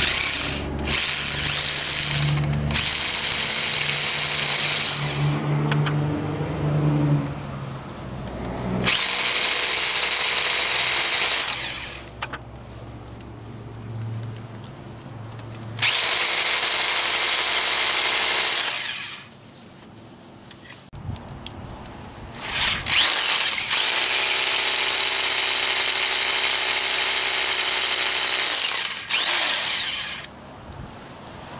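Hammer drill with a new carbide-tipped rock bit boring into very hard quartz, running in four bursts of a few seconds each with short pauses between. The pauses are where the bit is cooled in water to keep the carbide from dulling.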